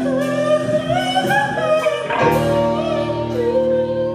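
Live band with a male singer: a bending, wavering vocal line over electric guitar and drums, with full sustained chords coming in about halfway and the voice settling on a long held note near the end.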